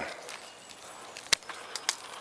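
Secateurs snipping twigs on an espalier pear tree: one sharp click a little past halfway, then two lighter clicks near the end.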